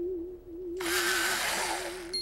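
Electric pencil sharpener whirring as it grinds a pencil to a point, starting about a second in and lasting about a second. Under it runs a held, wavering musical note.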